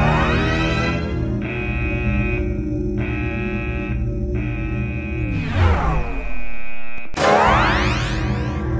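Sustained synthesizer score playing held chords, with rising pitch sweeps at the start and about seven seconds in and a falling glide a little before six seconds; the sound cuts out for a moment just before the second sweep.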